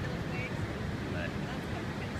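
Steady low rush of ocean surf with wind buffeting the microphone.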